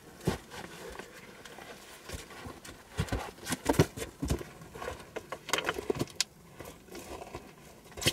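A person's footsteps and scuffing on snowy, stony ground, with irregular knocks and rustles of clothing as he ducks into a low stone shelter; the knocks are thickest a few seconds in.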